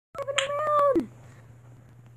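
A single cat-like meow, held steady at one pitch and then falling away at the end, followed by a faint steady low hum.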